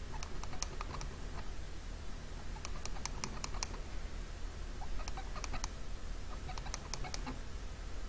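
Computer keyboard typing in four short bursts of quick clicks, over a steady low electrical hum.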